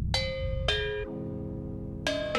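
Intro music: two ringing struck notes about half a second apart, each fading away over a low sustained tone.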